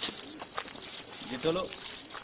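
A steady, high-pitched chorus of insects with a fast pulsing trill, continuous throughout.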